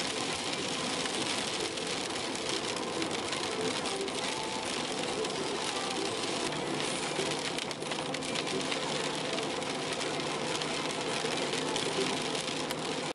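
Car driving on a wet road in the rain, heard from inside the cabin: a steady hiss of tyres on wet asphalt and rain on the windscreen and body, under a low engine hum that becomes clearer about halfway through.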